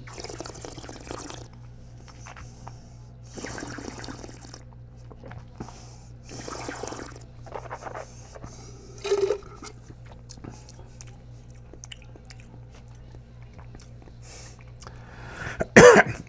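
Wine being slurped, air drawn noisily through a mouthful of wine three times, then spat into a stainless steel spit bucket about nine seconds in. A loud cough comes just before the end.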